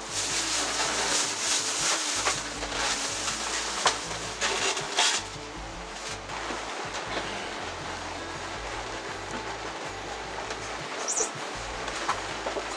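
A thin plastic takeout bag rustling and crinkling for the first five seconds or so as it is pulled open and emptied, over background music; after that it goes quieter, with the music and only light handling.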